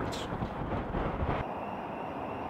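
Road traffic on a busy multi-lane street: a steady rush of car tyres and engines, with some wind on the microphone. About a second and a half in it gives way to a quieter, steadier background with a faint high steady tone.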